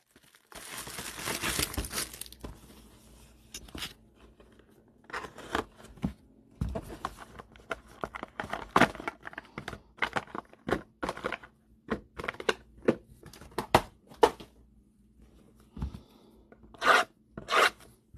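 Plastic shrink-wrap being torn and rustled on a trading-card hobby box, followed by a run of short irregular crinkles, rustles and scrapes as cardboard mini-boxes are lifted out and handled, with two louder rips near the end.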